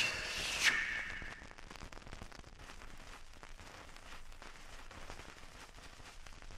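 The last held note of a jingle fades out in the first second and a half, followed by the faint hiss and scattered clicks and crackle of a 45 rpm vinyl record's surface in the quiet gap between tracks.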